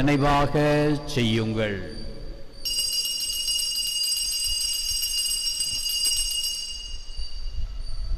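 Altar bells ringing for the elevation of the chalice at the consecration of the Mass: a steady high ringing that begins about two and a half seconds in and fades away near the end.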